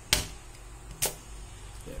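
The popsicle-stick trigger and catch of a homemade balloon-pump blaster powered by rubber bands being worked, giving two sharp snaps about a second apart; the first is the louder.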